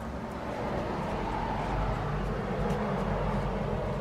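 Steady outdoor city background through an open balcony door: a continuous low rumble of distant traffic.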